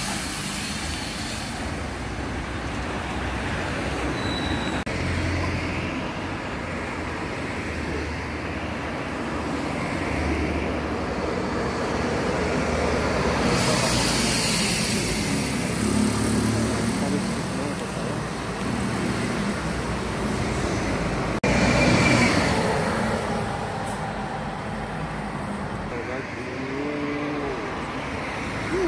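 City bus diesel engines running and pulling away amid street traffic, with a loud hiss of air about halfway through and a louder rush of passing traffic near the end.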